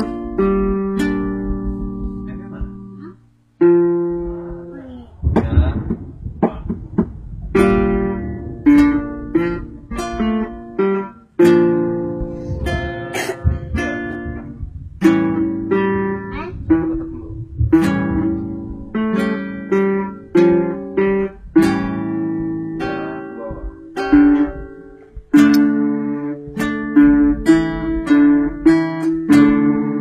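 Solo acoustic guitar playing plucked notes and chords in a free, uneven rhythm, with a brief break about three and a half seconds in.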